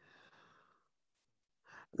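A man's faint exhale, like a sigh, lasting under a second, then a short breath in near the end.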